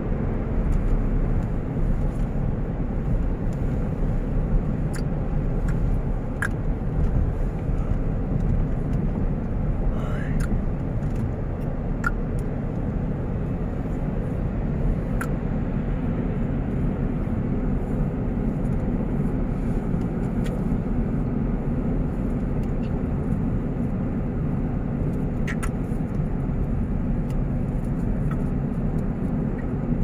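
Steady low road noise heard from inside a car moving at highway speed: a constant rumble of tyres and engine.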